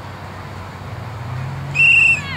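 Referee's whistle blown once near the end, a short steady high blast, as play stops at a tackle.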